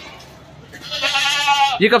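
A goat bleating once: one wavering call about a second long, starting about a second in.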